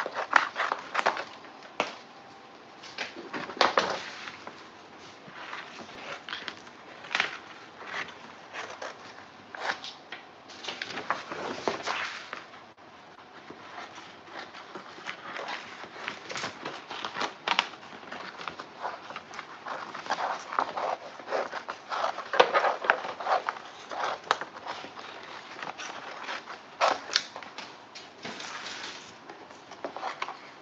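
Scissors snipping through a large sheet of glossy printed paper, in irregular cuts, with the stiff paper crackling and rustling as it is turned and handled.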